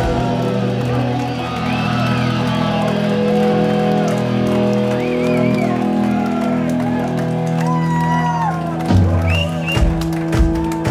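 A rock band's final chord ringing out live: electric guitar and bass held steady after the drums stop, with the crowd whooping and shouting over it. A few thuds come near the end.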